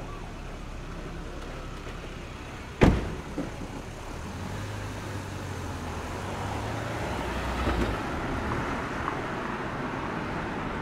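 A car door slams shut about three seconds in. Shortly after, the Dacia Duster's engine starts and runs with a steady low hum, which swells briefly near the end as the SUV pulls away.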